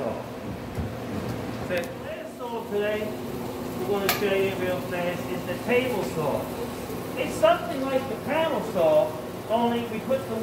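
A man talking, his words indistinct, over a steady low hum.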